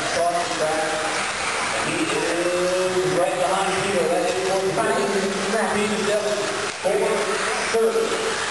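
Indistinct voices talking over a steady hiss of electric 1/10 scale 2wd buggies, 17.5-turn brushless class, racing on an indoor dirt track.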